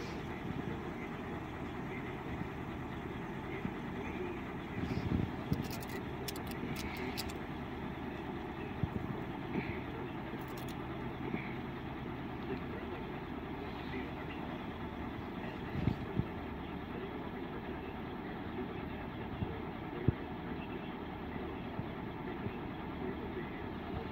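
Steady low hum of road traffic and a nearby idling vehicle, with a few faint knocks and a short run of clicks about six seconds in.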